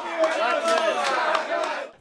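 Several voices on a football pitch shouting and cheering at once, cheering a goal just scored. The shouting cuts off suddenly near the end.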